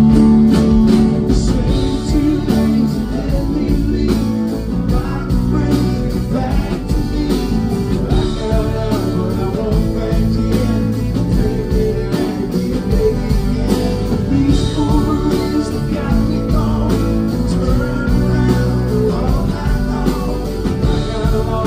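Live solo acoustic performance: a steel-string acoustic guitar strummed steadily while a man sings over it through a PA.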